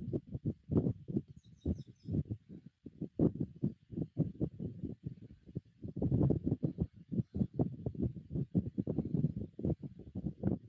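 Irregular low rumbling and buffeting on an open microphone in a video call, typical of wind hitting a phone mic outdoors, with no speech.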